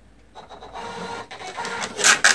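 Thermal receipt printer printing a receipt. Its stuttering line-by-line feed starts about a third of a second in and grows louder toward the end.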